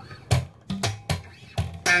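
Electric bass played slap style: a short groove of sharp, percussive slapped notes, about five in two seconds, the last one ringing on.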